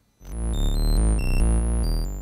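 ARP 2600 synthesizer patch playing: a deep bass under high, ring-modulated notes that jump from pitch to pitch several times a second. The whole sound swells in a quarter second in and dies away near the end, as the attack-release envelope opens and closes the VCA.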